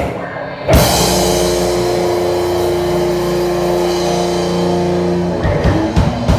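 Live rock band of electric guitar, bass guitar and drum kit striking one chord about a second in and letting it ring for several seconds, the ending of the song, then loose drum hits near the end.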